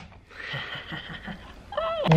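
A woman's high-pitched, excited squeal, held steady for about a second, then breaking into an open-mouthed shout near the end.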